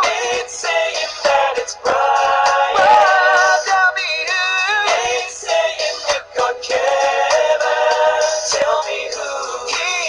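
Singing with music: wordless, held sung notes with a wavering vibrato, moving up and down in runs.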